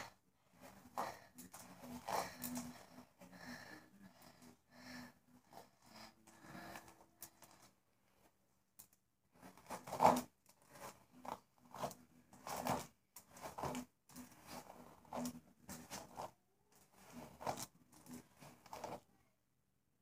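Hairbrush strokes through long hair: a series of soft, irregular brushing swishes, roughly one a second, with a short pause about eight seconds in.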